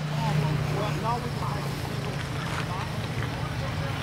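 Faint voices of people talking in the background over a steady low hum.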